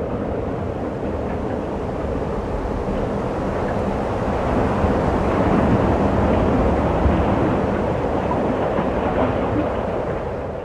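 Strong wind blowing across the microphone, a steady rumbling rush that grows a little louder about halfway through.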